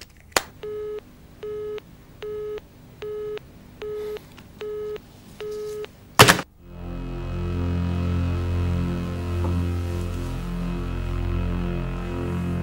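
Telephone busy tone after the line goes dead: seven short, evenly spaced beeps at one steady pitch, heard from the handset. Then a loud clunk as the desk phone's handset is put down. Low, tense music with a slow pulse follows.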